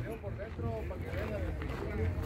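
Faint voices of other people talking in the background, over a steady low rumble of outdoor noise.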